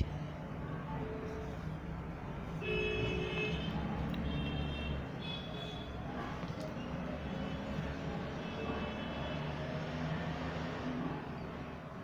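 Outdoor urban background: a steady low traffic rumble with a few short, faint horn-like tones.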